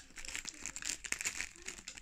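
Plastic chocolate-bar wrapper crinkling as fingers handle it: a dense run of sharp crackles lasting most of the two seconds.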